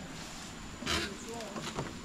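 Low, brief voice sounds over a steady high-pitched insect drone, with a short hiss about a second in.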